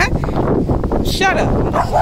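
A dog barking behind a gate, one bark a little over a second in, over a steady rumble of wind on the microphone.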